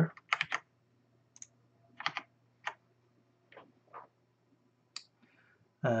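Sparse, quiet clicks of a computer keyboard and mouse: about eight separate strokes spread over a few seconds, over a faint steady low hum.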